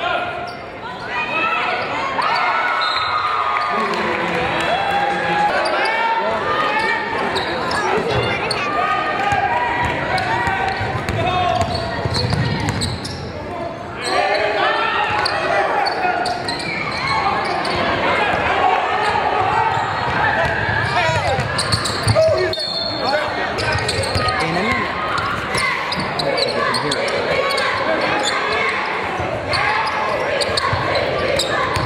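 Basketball game in a gym: many spectators' voices and shouts echoing in the large hall, with a basketball bouncing on the hardwood court.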